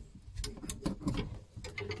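Irregular clicking and knocking of clothes hangers against a metal wire rack as knitted garments are moved about on it.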